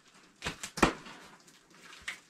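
Hands handling a cardboard shipping box at its open top: a few short knocks and scrapes about half a second in, the sharpest just before a second.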